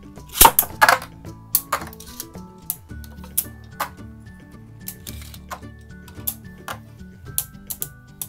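Two Beyblade Burst tops, Strike Valkyrie and Winning Valkyrie, ripped from their launchers with loud clacks in the first second, then spinning in a plastic stadium and hitting each other and the walls in sharp, irregular clicks. Background music runs underneath.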